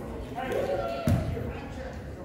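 A basketball bouncing once on the hardwood gym floor about a second in, a single sharp thud, with people's voices around it.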